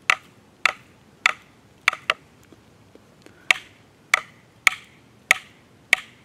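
Spine of a Boker Kalashnikov automatic knife's AUS-8 dagger blade whacked hard against a wooden 4x4 post. About ten sharp knocks come roughly every half second, with a short pause in the middle. It is a spine-whack test of the knife's plunge lock, which holds without folding.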